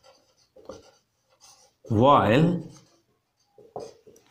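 Marker pen writing on a whiteboard: a few short, faint strokes as words are written out.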